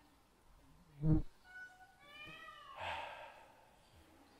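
A short, loud low voice-like sound about a second in, then a high-pitched drawn-out cry whose pitch falls near the middle.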